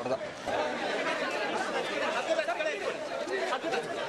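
Several people talking over one another: a dense chatter of overlapping voices with no single clear speaker.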